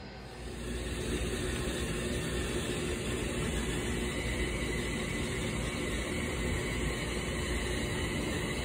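Steady rushing road noise of a moving car, heard from inside the cabin, starting about half a second in.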